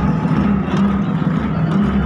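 Loud music over stadium loudspeakers, with a heavy bass pulsing about twice a second, over the noise of a large crowd in the stands.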